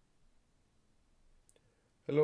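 Near silence: faint room tone, with one faint click about one and a half seconds in.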